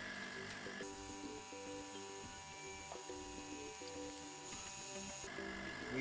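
Electric vacuum pump running steadily as it evacuates a 220-litre steel oil barrel, a faint steady hum with a thin whine.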